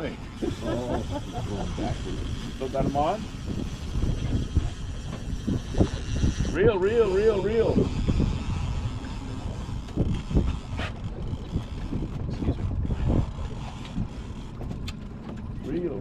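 Wind and sea noise buffeting the microphone on a small boat, a steady low rumble, with a few short indistinct voices and a wavering vocal sound about six to eight seconds in. Scattered knocks and clicks can be heard throughout.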